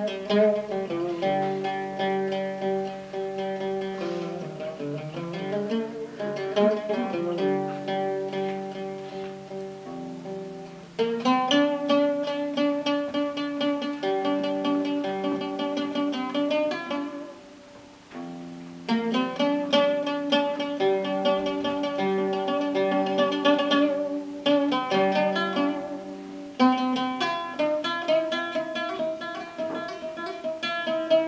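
Solo oud playing a plucked melody in phrases, with notes sliding into one another, and a short pause about eighteen seconds in before the playing picks up again.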